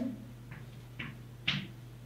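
Chalk writing on a blackboard: three short, sharp strokes about half a second apart, the last the loudest.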